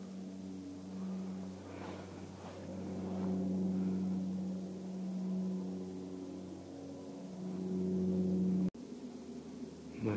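A steady low motor hum that swells and fades and cuts off suddenly near the end.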